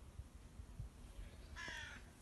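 A crow cawing once, a short harsh call near the end.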